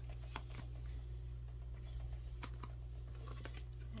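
Tarot cards being handled and laid down on a table: a few light, scattered clicks and taps over a steady low hum.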